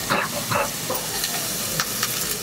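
Onions and garlic frying in sesame oil in a pan, a steady sizzle. A few light knife chops on a wooden chopping board sound over it.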